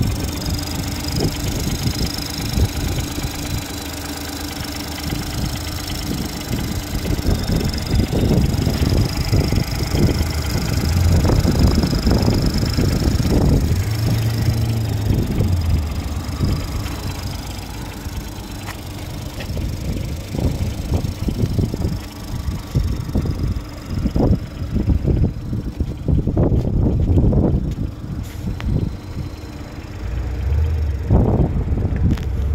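A 2019 Ford Fusion's engine idling steadily just after being started, heard from over the open engine bay, with irregular low rumbling over it.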